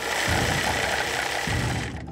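Industrial sewing machine running steadily, with a faint whine over its mechanical whirr, stopping just before the end.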